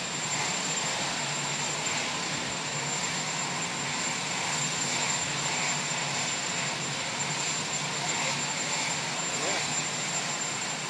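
Steady aircraft engine noise running on without change, under faint voices.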